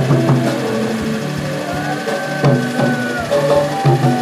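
Live church band music: sustained keyboard chords with drum strokes, and a long held high note through the middle.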